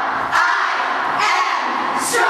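A group of girls yelling together in unison, one loud shout about every second, in time with their punches in a self-defense drill.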